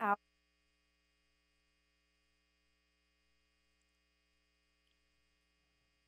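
Near silence with a faint, steady electrical hum: a low drone and a few thin, unchanging higher tones.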